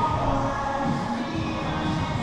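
Background music with held notes.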